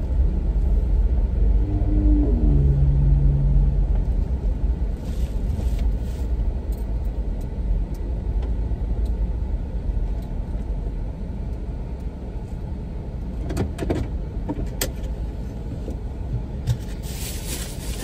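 Car engine and road rumble heard from inside the cabin while driving slowly into a parking spot, with a few sharp clicks a little past the middle. Near the end comes rustling, as a paper takeout bag is reached for and handled.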